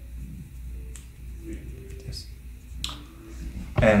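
Small sharp plastic clicks and handling noise as a dental imaging plate in its plastic hygiene bag is pushed edge-first into the bite block of a plastic XCP film holder, two clicks standing out, one about a second in and one near three seconds.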